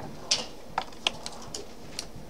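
A handful of irregular keystroke clicks, typing on a computer keyboard, over low room hum.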